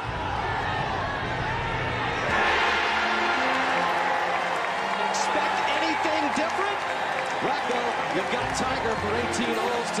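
Large golf gallery cheering as a putt drops, the roar rising at the start and swelling sharply about two seconds in, then holding, with single voices shouting over it.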